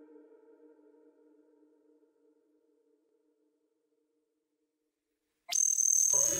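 The tail of a sustained electronic chord dying away to near silence. About half a second before the end, a loud new sound cuts in suddenly: a high steady tone over a noisy wash.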